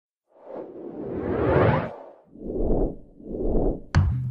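Whoosh sound effects for an animated subscribe graphic: one long rising whoosh, then two shorter whooshes, ending in a sharp click.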